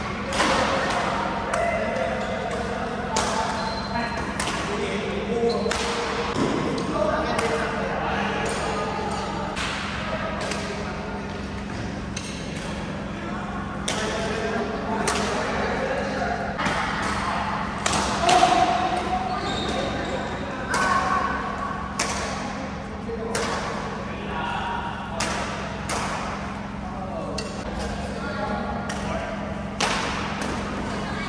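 Badminton rallies: a series of sharp racket strikes on the shuttlecock, roughly one a second, echoing in a large hall, over the chatter of voices.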